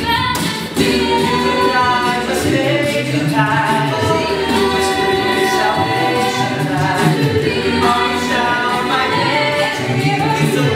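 Mixed-voice a cappella group singing in close harmony, with a sung bass line underneath and beatboxed percussion keeping a steady beat.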